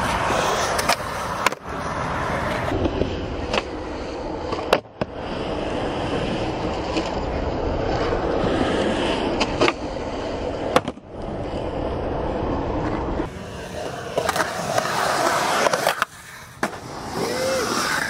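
Skateboard wheels rolling on smooth concrete with a steady grinding rumble, broken several times by sharp wooden clacks of the tail popping and the board landing from ollies.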